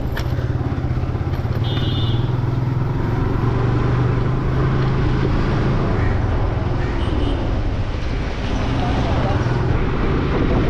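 Motorcycle engine running steadily at city riding speed, with wind and road noise on the microphone.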